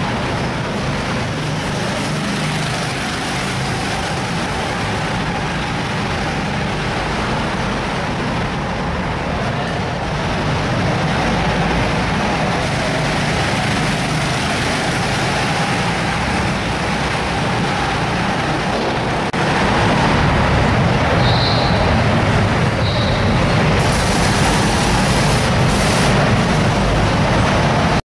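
Go-kart engines running on a track, a steady, dense mechanical noise of several karts, getting a little louder about two-thirds of the way through as karts come closer.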